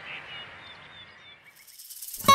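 Faint outdoor ambience: small birds chirping over a steady hiss, fading out about one and a half seconds in.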